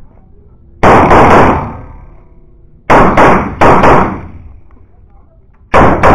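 CZ 75 Shadow pistol fired in quick strings. There is a fast string of shots about a second in, two quick groups around three and four seconds, and another pair at the very end. Each group trails off in the echo of an indoor range.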